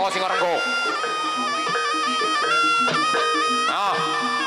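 Traditional Javanese music led by a reedy wind instrument playing a melody in long held notes that step up and down, over lower accompanying notes. A man's voice shouts briefly just after the start and again near the end.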